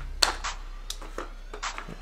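A few light clicks and taps of handling noise, the sharpest about a quarter of a second in, over a low steady hum.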